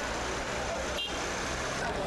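Busy street ambience: steady traffic noise with a low engine rumble, and indistinct voices of people in the background.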